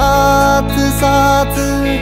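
Instrumental passage of a Hindi song: a melody in held notes, changing pitch a few times, over a steady bass.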